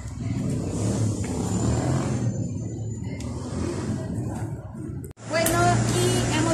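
Low, uneven outdoor rumble of background noise that stops abruptly about five seconds in, followed by a steady low hum and a woman's voice.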